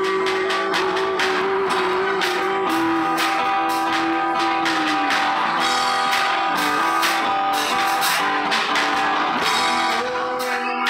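Live instrumental music from an acoustic guitar being strummed and a snare drum played with sticks, with long held melody notes stepping down in pitch over them.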